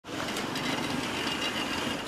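Street ambience with cars driving past on a road: a steady noise with faint light clicks and a thin, steady high tone.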